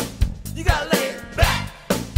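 Live band playing upbeat dance music: a drum kit keeps a steady beat with a strike about every half second, and a lead melody bends over it.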